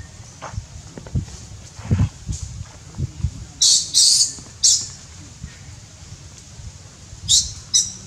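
Baby long-tailed macaque giving short, high-pitched squeals in two bursts of three, about three and a half seconds in and again near the end, the distress cries of a baby whose tail is held by an adult male.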